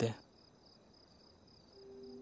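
Crickets chirping faintly in a steady, pulsing high trill, after a man's voice breaks off at the very start; a low music note enters near the end.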